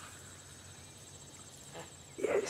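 Insects trilling steadily in a faint, high-pitched, unbroken drone over a quiet field.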